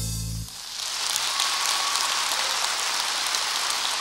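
The song's final held chord stops about half a second in, followed by steady audience applause.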